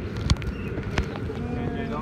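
Wind buffeting the phone's microphone as a steady low rumble, with people talking faintly underneath. Two sharp knocks come through, about a third of a second in and again a second in.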